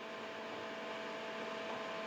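Steady hum of sawmill machinery running, with a few fixed tones in it and no cutting or knocks, growing slightly louder.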